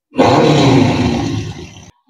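Film soundtrack sound effect played over cinema speakers: one loud, deep, dense roar-like blast lasting nearly two seconds, which cuts off abruptly.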